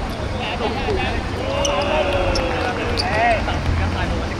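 Football being kicked and bouncing on an artificial pitch, a few short knocks, with players calling out across the field. A steady low rumble runs underneath.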